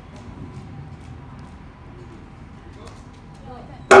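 A large Japanese temple bell (bonshō) struck once near the end with its rope-swung wooden striker: a sudden, very loud hit that rings on in a deep, steady hum of several tones.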